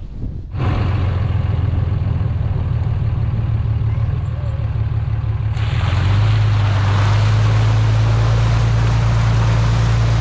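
Pickup truck driving with its engine droning steadily; about halfway through, water from the flooded field starts rushing and spraying off the front tyre, adding a loud splashing hiss over the engine.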